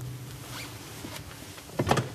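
Faint scratching of a pen and small desk-handling noises over a steady low hum, then a short, loud rasping scrape just before the end.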